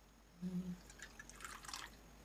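Faint water drips falling from a small pot into a little steel bowl, a scatter of light ticks in the second half. A short hummed 'mm' about half a second in.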